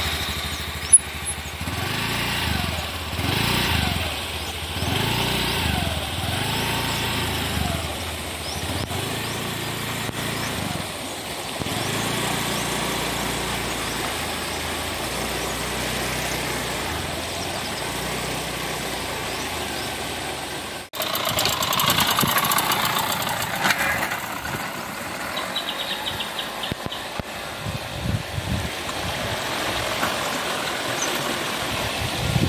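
Honda Activa scooter engine starting and running unevenly over the first several seconds, then a steadier run under a rushing background. About twenty seconds in, the sound cuts abruptly to a louder rushing noise.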